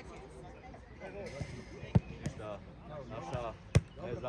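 A football kicked twice on an artificial turf pitch: two sharp thuds about two seconds apart, the second slightly before the end, with players' distant shouts between.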